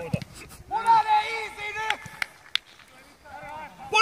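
A man's long shouted call across an outdoor football pitch about a second in, then a fainter shout near the end, with a few short sharp knocks in between.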